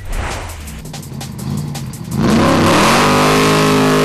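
Factory Five Cobra-replica roadster's V8 engine accelerating hard, coming in loudly about two seconds in and rising in pitch, then holding high. Electronic music plays before it.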